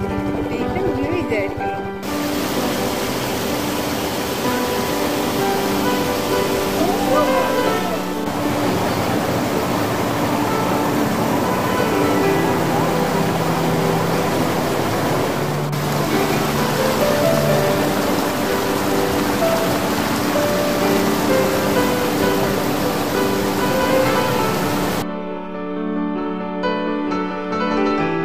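Small waterfall tumbling over boulders into a rocky stream, a steady rushing that starts abruptly about two seconds in and cuts off just before the end. Background music with a melody plays throughout.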